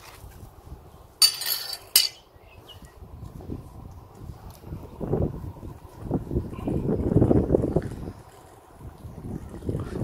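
Cleaver blade crunching through the fleshy stem of an Echeveria 'Paul Bunyan' rosette: a short crisp crackle about a second in, followed by a sharp click. A few seconds later comes a low rustling as the severed head and the soil-caked base are handled.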